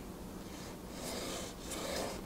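Faint scratch of a pencil drawing a short line on a wooden board, its point guided through a slot in a steel marking rule.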